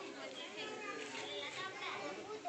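A crowd chattering, many voices overlapping at once, with children's voices among them.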